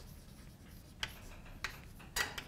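Chalk writing on a blackboard: faint scratching of the chalk, with two sharper taps in the second half.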